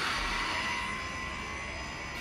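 Steady rushing whoosh with faint held tones, slowly fading: a dramatic sound-effect tail from a TV promo clip playing on a phone.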